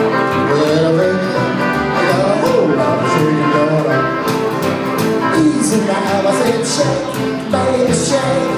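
Live band playing rock and roll on upright bass, acoustic guitar and electric guitar.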